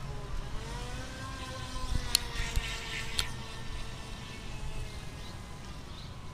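Feilun FT009 RC speedboat's brushless electric motor whining as the boat runs on the river, its pitch sliding slowly down. Two sharp clicks, the loudest sounds, come about two and three seconds in.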